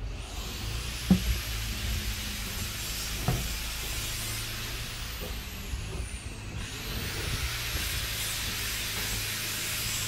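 A steady low machine hum with a hiss over it, and two dull thumps about one and three seconds in.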